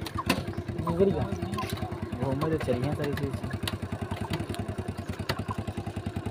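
A motorcycle engine running steadily, its firing pulses even throughout, with voices talking over it.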